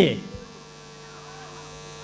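Steady low electrical hum from the microphone and sound-system chain, heard plainly in a pause between spoken phrases; the tail of a word fades out at the very start.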